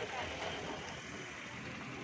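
Indistinct voices of several people talking in the background over steady outdoor noise.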